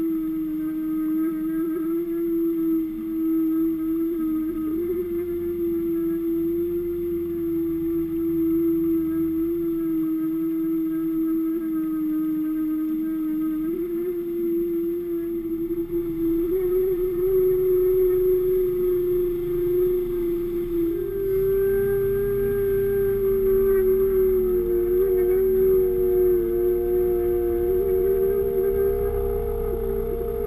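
Steady droning hum of an underwater camera rig being towed while trolling, heard through the camera's housing. The pitch steps up a few times, around the middle and again later.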